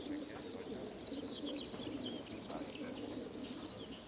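A mass of racing pigeons crated in a transport truck, cooing together in a steady low murmur, while small songbirds chirp and twitter in quick high notes over it.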